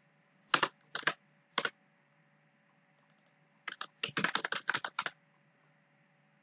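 Computer keyboard typing: three separate keystrokes in the first two seconds, then a quick run of about a dozen keystrokes about four seconds in.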